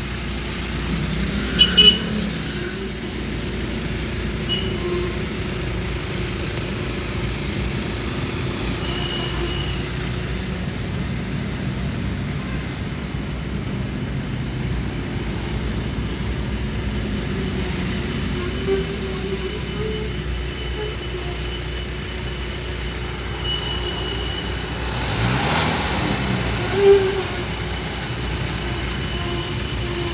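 Steady engine and road noise from inside a moving car, with a few short louder sounds, twice about 2 seconds in and once near the end.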